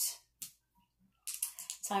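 Light clicks of coins and dice handled on a tabletop: a single click about half a second in, then a quick run of small clicks just before speech resumes.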